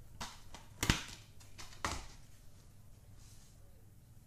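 Plastic DVD case being handled and snapped open: a few sharp clicks in the first two seconds, the loudest about a second in.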